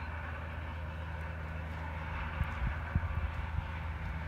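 Steady low engine drone of a motor vehicle running at a distance, with a few low thumps about halfway through.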